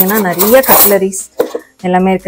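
Metal cutlery clinking and rattling in a kitchen drawer's cutlery tray as it is handled, with a sharp clink about one and a half seconds in. A singing voice with drawn-out, wavering notes is louder than the clinking over the first half.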